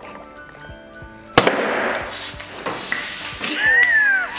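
A champagne bottle's cork pops about a second and a half in, followed by about a second of hissing as the foaming wine rushes out, over background music.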